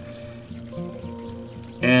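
Soft background music with a few long held notes during a pause in speech; a man's voice comes back at the very end.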